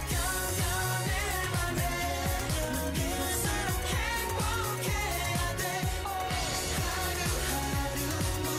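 K-pop song with male vocals singing over a backing track with a steady low drum beat.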